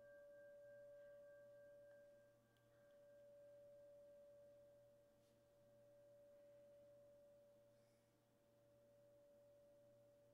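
Near silence, with a faint, steady pure tone held throughout; fainter higher overtones fade out about halfway through.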